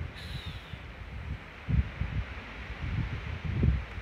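Wind buffeting a phone microphone: an uneven low rumble that swells and fades in gusts. A faint, short, high falling note sounds just after the start.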